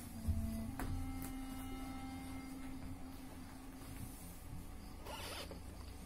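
Actors moving about a stage, their costumes rustling. There is a low thump just after the start and a sharp click just under a second in, then a soft swish near the end, over a steady low hum.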